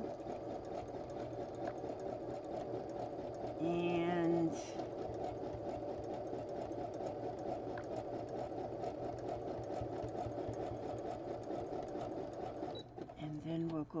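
Domestic sewing machine running steadily, sewing a zigzag stitch along the edge of layered fabric scraps with a fast, even stitching patter, then stopping shortly before the end.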